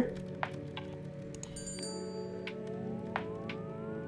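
Soft background music with sustained notes, joined by a few faint clicks and a short high ringing chime about a second and a half in, like a subscribe-button animation's click-and-bell effect. Rising tones come in near the end.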